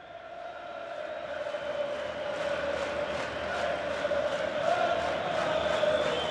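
A large football crowd chanting, fading up and growing steadily louder, with a quick regular beat running under it.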